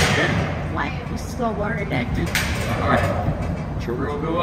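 Steady rumble of running mill machinery with a couple of faint metallic clanks, and muffled voices.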